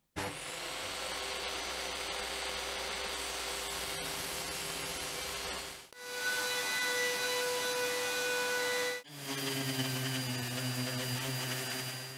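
Power tools working an oak board, in three cut-together takes: a table saw running and cutting for about six seconds, then another machine for about three seconds as the board is pushed along a fence, then a handheld sander running steadily on the oak top near the end.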